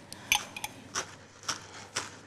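Chef's knife chopping chives against a wooden cutting board: a run of sharp, separate knocks, roughly two a second.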